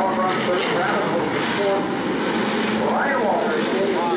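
A pack of modified stock car racing engines running at speed through a turn. Engine pitches rise and fall as cars pass, with one clear rise and fall about three seconds in.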